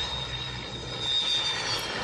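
MiG-29 fighter's jet engines running during its landing roll: a steady high whine over a rushing noise and a low rumble.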